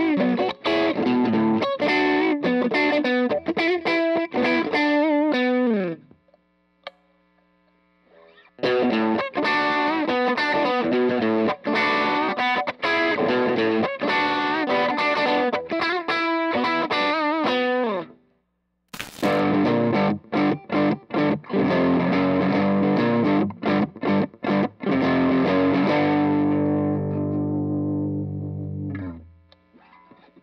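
G&L ASAT electric guitar played with overdrive: quick picked runs and chords. The playing stops for a couple of seconds about six seconds in, breaks off again briefly with a sharp click, and near the end a last chord rings out and fades away.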